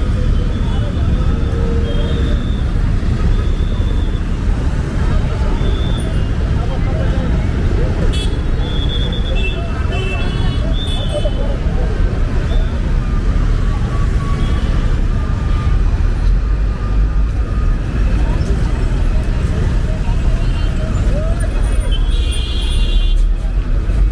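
Busy street traffic: motorcycles, cars and buses running in a steady rumble, with horns sounding now and then, mostly around the middle and near the end. Passers-by talk throughout.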